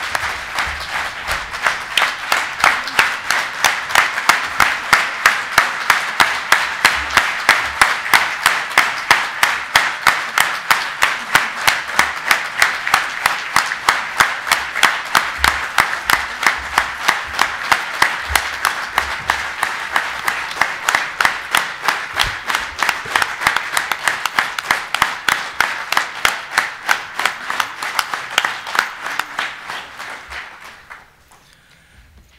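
A large audience giving a standing ovation, clapping together in a steady rhythm of about three to four claps a second. The clapping grows slightly quieter toward the end.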